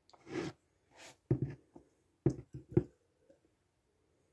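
Mouth sounds of someone tasting beer: a soft breath, then a handful of wet lip smacks and tongue clicks, the sharpest coming in a cluster a little past the middle.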